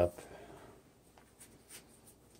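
Faint rustling of heavy-duty paper towels being tucked around a Swiffer mop head by hand, a few soft scratchy touches in the second half.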